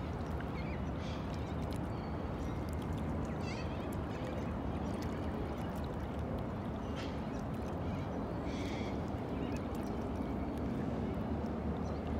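Canoe paddle blade sculling back and forth in the water beside the hull, a gentle swishing of water, over a steady low rumble, with a few brief bird calls scattered through.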